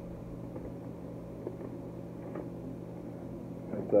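Steady low hum of a small room's background, with a few faint taps and rubs from a cardboard poster box being handled.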